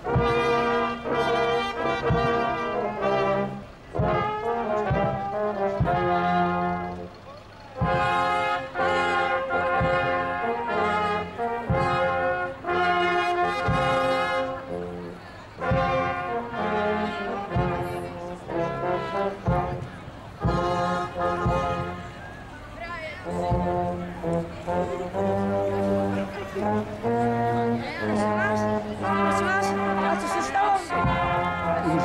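Marching brass band playing a tune, tuba carrying the bass under trumpets, in held phrases with brief breaks between them.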